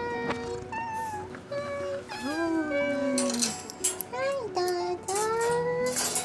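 A domestic cat meowing over and over: several calls that slide up and down in pitch, the longest one a couple of seconds in and another rising near the end, the meowing of a cat at feeding time. Brief clattering comes between the calls in the middle.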